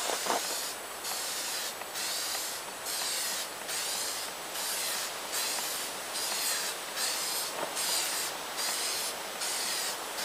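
Aerosol can of clear sealer spraying onto a paper map in a steady run of short hissing bursts, about one a second with brief pauses between them, as the map is given a waterproofing coat.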